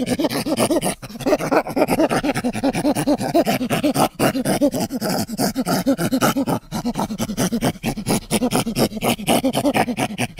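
Monkey-Men creature sound effect built from layered primate calls: a rapid, rhythmic run of panting grunts and hoots, about six or seven a second, with a few brief breaks.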